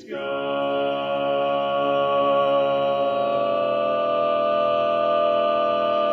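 Barbershop quartet of four men singing a cappella in close harmony, holding one long, steady chord. It opens on a short hissing consonant.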